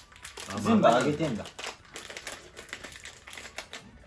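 Plastic snack packet crinkling and rustling in the hands as it is handled and opened, a dense run of small crackles through the second half.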